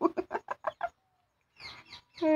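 A quick run of about eight short, clucking cackles in the first second, then quiet, with a faint brief sound near the end.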